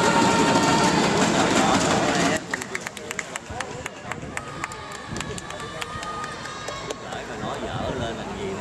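Loud crowd voices in a sports hall, cutting off suddenly about two seconds in. After that come scattered sharp taps and short squeaks of badminton play on the court: racket hits on the shuttlecock and shoes on the floor.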